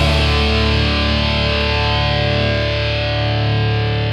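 A distorted electric guitar chord held and left ringing on its own in a punk rock song, fading slightly, with the drums and voice dropped out.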